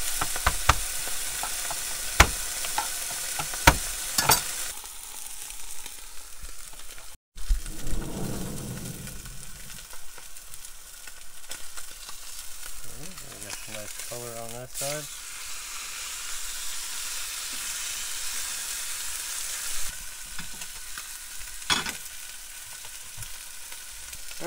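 Strip steak searing in olive oil in a hot frying pan: a steady sizzle, with sharp pops and clicks through the first few seconds.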